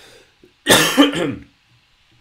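A man clearing his throat once, loudly, in a short burst of under a second with two peaks.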